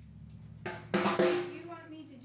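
A drum kit struck twice, the second hit louder, with the drum ringing on for about a second after.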